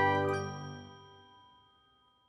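The closing chord of an outro logo jingle, a held chord of bell-like tones with one last high note just after the start, dying away to silence about one and a half seconds in.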